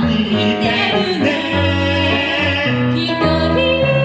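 A female and a male voice singing a musical-theatre duet through microphones and a PA, with piano accompaniment.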